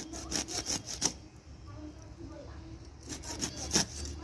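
A grass carp being cut on a boti, its scaly body drawn against the curved blade in quick rasping strokes: a run of about seven strokes in the first second and another short run near the end.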